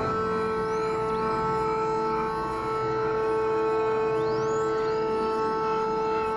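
Experimental electronic synthesizer drone: several held tones layered together, the strongest a steady low-middle note, with a few faint rising glides high up near the start and again about four seconds in.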